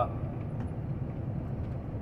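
Steady low rumble of a semi-truck on the move: engine and road noise.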